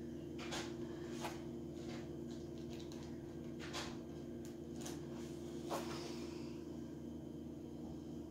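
Quiet handling of craft materials and a glass bottle: a few light taps and rustles, spaced a second or more apart, over a steady low hum.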